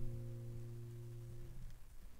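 A held chord from flute, classical guitar and accordion fading out over about a second and a half, its low note lasting longest.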